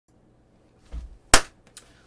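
A dull low thump about a second in, then one sharp snap, the loudest sound, and a faint tick shortly after.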